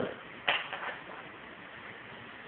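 A sharp knock about half a second in, followed by a few softer taps, then only a low steady hiss.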